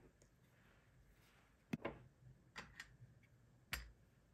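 A few soft clicks and knocks of small pencil sharpeners being set down on a wooden tabletop, the last one a heavier knock, over near silence.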